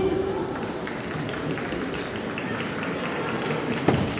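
Sports-hall ambience: a steady murmur of crowd voices with scattered light clicks of table tennis balls. One sharp click comes near the end.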